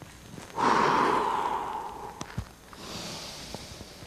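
A person breathing deeply and audibly into a close microphone during a slow breathing exercise. A loud breath starts about half a second in and lasts about a second and a half. A soft thud of a foot stepping follows, then a softer, hissier breath near the end.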